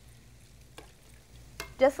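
Faint stirring of chili in a stainless steel pot, with a soft sizzle from the hot pot and two light clicks of the spoon against the pot, about a second apart.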